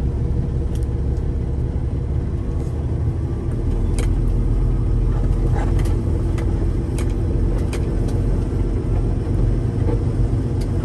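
A semi truck's diesel engine and cab noise as it rolls slowly, heard from inside the cab: a steady low rumble, with a few sharp clicks and rattles scattered through it.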